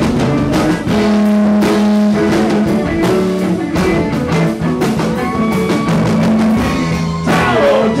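Live rock band playing an instrumental passage between sung lines: electric guitars, keyboard and drum kit.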